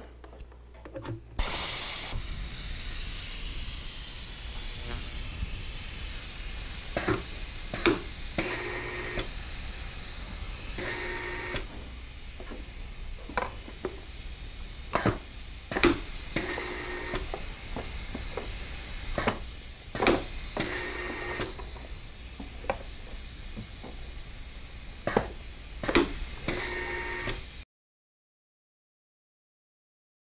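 Pneumatic tamp label applicator (Take-A-Label TAL-3100T) coming under compressed air: a sudden steady loud hiss starts about a second in as the air line is connected. Through the rest of the clip it keeps hissing, with sharp knocks and short louder surges of air as the tamp cylinder cycles, stamping labels onto boxes.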